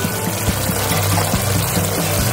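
Background music with a steady low tone, over hilsa steaks simmering and bubbling in a pan of mustard and poppy-seed gravy.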